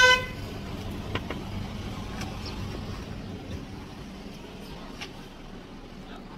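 A short single car-horn toot right at the start, then steady street traffic noise.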